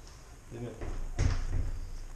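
A white PVC casement window being opened, with a sharp clack of the handle and sash a little over a second in.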